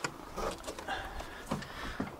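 A few light clicks and knocks from hands handling the gear in the toolbox, over low background noise.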